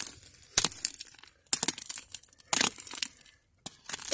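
Rock hammer's pick striking and scraping into pebbly red clay and gravel, about four sharp strikes roughly a second apart, with small stones clinking and crumbling loose between them.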